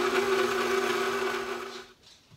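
KitchenAid stand mixer running on low speed, its paddle beating chocolate cookie dough in the steel bowl: a steady motor hum that dies away near the end.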